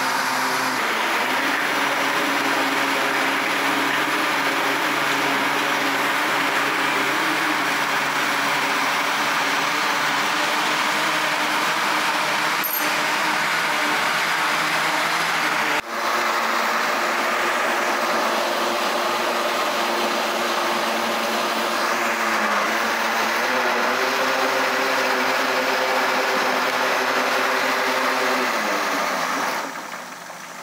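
Countertop blender motor running steadily at speed, blending a full jar of cornmeal cake batter, with a momentary break about halfway. Near the end its pitch drops as the motor winds down and stops.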